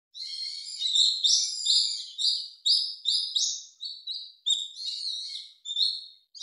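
Birdsong: a small songbird giving a rapid run of repeated high chirping notes, about two or three a second.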